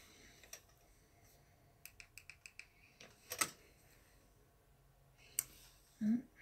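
Quiet handling noise from small objects being moved about: a single click, then a quick run of about six light clicks, a louder brief rustle in the middle, and one sharp click near the end.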